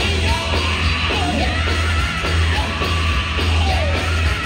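Live band music played loudly, with drums, bass and keyboard under a lead vocalist singing into a microphone, his voice rising and falling in long bending lines over the band.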